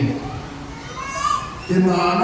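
Speech: a man preaching over a microphone stops, and in the short pause children's voices are heard faintly in the hall before he starts speaking again near the end.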